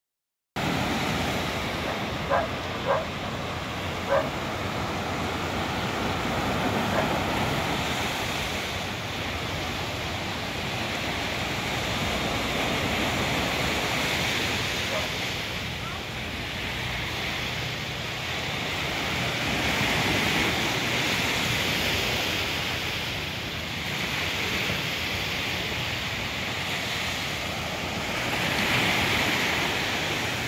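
Sea wind and surf noise by the shore, a steady rushing that swells and eases every several seconds, with wind buffeting the microphone. Three short knocks sound in the first few seconds.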